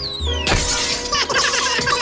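Cartoon soundtrack: music under a falling whistle, then about half a second in a crash of breaking, clattering debris.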